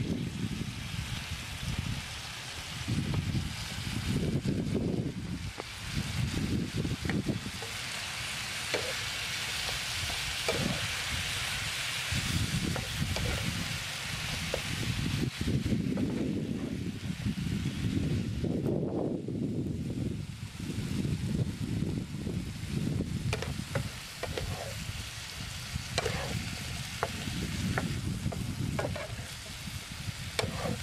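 Beef and vegetables sizzling in a frying pan on a portable gas stove, stirred with a spatula that scrapes and clicks against the pan. The sizzling is loudest in the middle, with scattered clicks near the end and intermittent low rumbling throughout.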